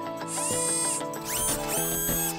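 Electronic theme music of a TV programme's title bumper, with sound effects for the graphic transition. Steady held notes run underneath, a high hiss comes about half a second in, and two quick rising swept tones come near the end.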